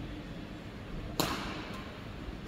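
A badminton racket striking a shuttlecock once, about a second in: a sharp crack that rings briefly in the large hall.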